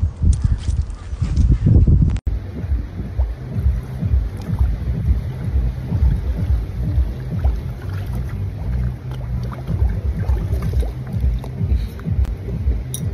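Wind buffeting the phone's microphone, a loud low rumble, broken by an abrupt cut about two seconds in before it carries on.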